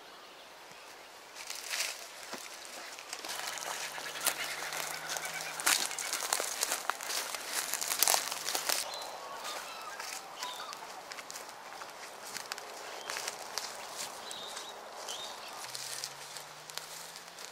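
Footsteps crunching on dry leaf litter and twigs, with irregular sharp cracks and rustles, as people creep through scrub. A faint low steady hum sits underneath from a few seconds in.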